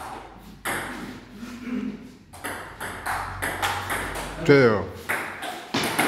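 Table tennis rally: a ball clicking sharply off paddles and the table in a quick, uneven run of hits. A voice calls out "Ok" about four and a half seconds in, the loudest sound.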